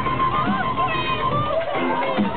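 Loud electronic dance music from a live DJ set played through a club sound system, with a low beat under a wavering, voice-like pitched line.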